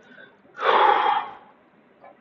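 A man's single loud, breathy exhalation from the throat, lasting just under a second and starting about half a second in.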